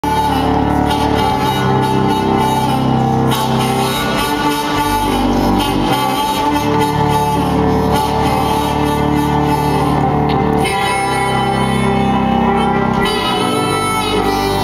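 Live instrumental intro played on an organ: sustained chords held steadily, shifting to new chords every few seconds, with no voice.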